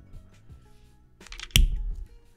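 Quiet background music, and about one and a half seconds in a single sharp knock as the plastic Copic marker is put away.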